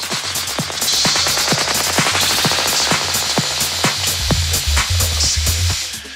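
Electronic house/techno music played in a club DJ set, in a build-up. Rapid, evenly repeating percussion hits run without the kick, and a hissing noise sweep swells about a second in. Bass comes back past the two-thirds mark, then the sound drops out briefly at the very end before the full beat returns.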